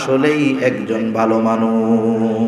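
A man's voice chanting a sermon in a drawn-out melodic tone, picked up by microphones. Past the middle it settles on one note and holds it.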